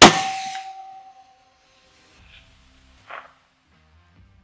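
A single 6mm Creedmoor rifle shot, very loud, followed by echo and a ringing tone that die away over about a second and a half. A faint short sound comes about three seconds later. The shot misses the target at 745 yards.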